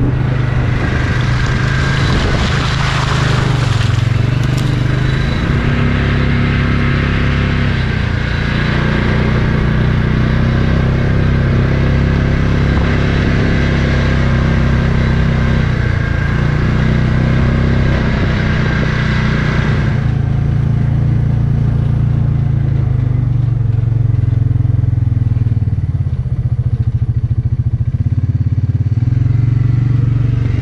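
Side-by-side utility vehicle's engine running as it drives along a rough dirt trail, its note dipping and rising a few times with the throttle. A rushing noise from the wheels and the ride rides over it and drops away about twenty seconds in.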